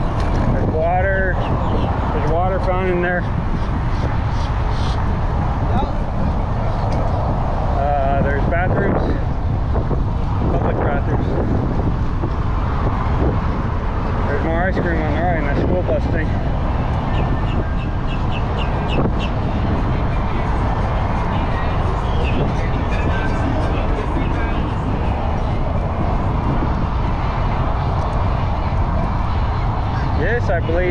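Steady rush of wind and road noise on the microphone of a camera carried by a moving bicycle, with car traffic going by on the adjacent road. Brief snatches of voices come through now and then.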